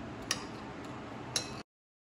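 Faint room noise with two small sharp clicks about a second apart, then the sound cuts off into silence shortly before the end.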